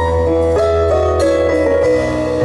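Live band playing an instrumental passage without singing: a melody of held notes stepping through changes over sustained bass notes, the bass moving to a new note near the end.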